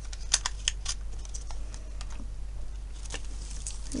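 Light clicks and taps of small cosmetic containers being handled and set down, a quick cluster in the first second and a couple more near the end, over a steady low hum.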